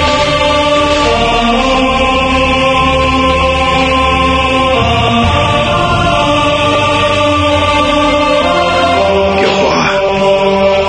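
Background music of long held chords whose notes change every few seconds.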